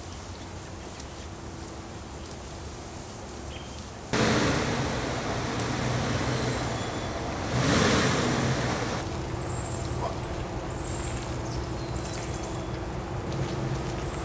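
Pickup truck engine running, starting abruptly about four seconds in with a louder surge around eight seconds, after a quieter steady background hum.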